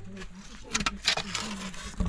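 A wooden board scraping and rustling against stones as it is moved by hand, in a few short scrapes around the middle.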